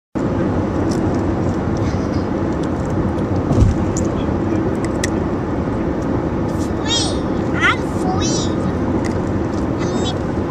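Steady road and engine noise inside a moving car's cabin, with a low thump about three and a half seconds in. Near the end a young child makes a few short, high-pitched vocal sounds.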